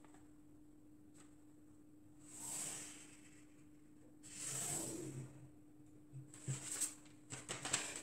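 Faint handling sounds of pattern drafting with a ruler and pencil on paper: two soft swishes a couple of seconds apart, then a few light taps and clicks near the end, over a steady low hum.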